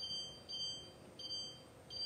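Electronic cooktop controls beeping as a burner is switched on and its heat set. There are about four short, high-pitched beeps at uneven intervals.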